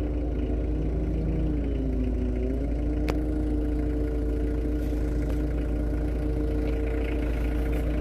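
Nearby engine idling steadily, a deep hum whose pitch sags briefly about two seconds in before settling back. There is a single sharp click about three seconds in.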